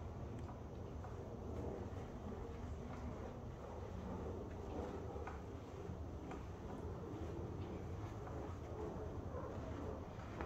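Faint rubbing of a microfiber towel wiped over an alloy wheel's spokes and barrel, over a steady low hum of room noise, with a few light ticks.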